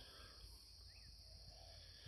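Near silence: faint outdoor ambience with a steady high-pitched hiss and one faint, short bird chirp about a second in.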